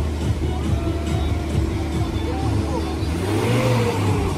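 People talking faintly over a steady low rumble.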